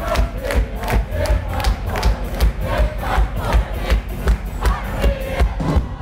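Live rock band playing a loud song: a Telecaster-style electric guitar, bass and drums, with drum hits about four times a second. Audience noise is mixed in with the music.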